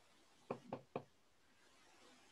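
Three quick computer-keyboard keystrokes, short sharp taps about a quarter second apart, picked up faintly by the microphone.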